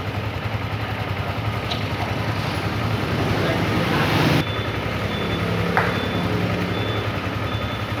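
Yamaha motorcycle engine idling steadily during a diagnostic check, reading as running normally. A rushing noise builds and cuts off suddenly about halfway through.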